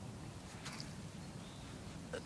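Quiet outdoor background with a steady low rumble. One brief, faint noise comes about two-thirds of a second in.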